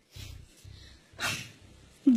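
A person's single short sniff through the nose about a second in, against a low hum.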